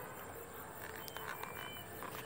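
Quiet open-field ambience with a few faint, short, high chirps and some light ticks, from the plastic earphone case being handled.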